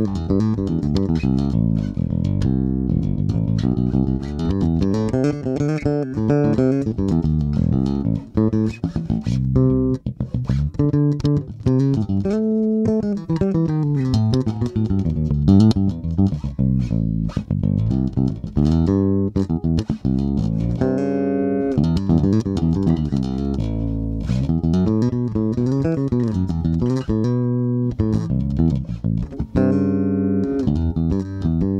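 Sterling by Music Man Ray4 SUB electric bass with a Nordstrand Blade Man ceramic humbucker (two Zen Blade coils) wired in parallel, through a Trickfish IPA onboard preamp with the EQ flat. It plays a continuous riff of plucked notes with a few sliding notes, and the output is loud and high.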